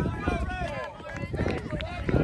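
Several voices calling out and talking over one another at a youth soccer game, with no clear words, and a brief lull about a second in.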